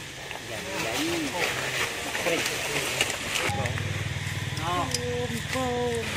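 Long-tailed macaques calling: short pitched coos that rise and fall, with a few held level tones near the end. From about halfway through, a steady low drone runs under the calls.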